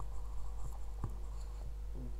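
Room tone: a steady low hum with a few faint clicks, one of them about a second in.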